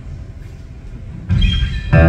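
A low steady hum from the hall's sound system, then about a second and a half in an amplified acoustic guitar sounds a chord, and near the end the amplified acoustic guitars start the tune in full.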